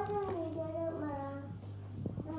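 A child's voice singing in the background, with long held notes that slide up and down, over a steady low hum.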